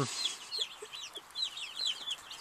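A brood of day-old Cornish cross broiler chicks peeping: a steady stream of short, high, falling peeps overlapping from many birds.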